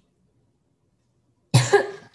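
A woman coughs sharply about one and a half seconds in, a short cough in two quick bursts, after near silence.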